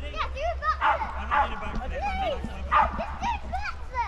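An excitable dog barking and yipping over and over, in short high calls that rise and fall in pitch.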